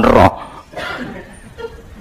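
A man's voice ends a short question in the first instant, then a pause of faint room background follows.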